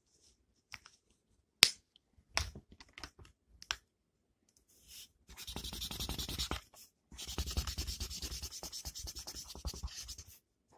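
A few scattered taps and clicks, the loudest about a second and a half in. About halfway through, a drawing implement starts scratching across paper in rapid back-and-forth colouring strokes, pausing briefly and then carrying on.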